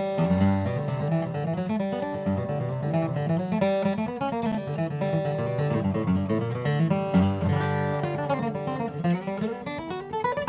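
Boucher SG-52 master grade acoustic guitar, Adirondack spruce top with rosewood back and sides, played solo: quick picked single notes mixed with chords.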